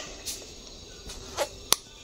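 Faint room noise with one sharp click about three-quarters of the way through, just after a brief vocal sound.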